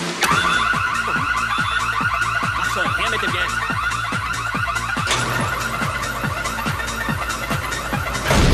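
An alarm bell starts ringing suddenly and keeps ringing with a fast, steady trill, over dance music with a steady kick-drum beat.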